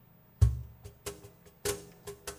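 A geomungo ensemble begins a piece. About half a second in comes a loud, deep struck note, followed by a run of sharp, percussive plucked-and-struck notes.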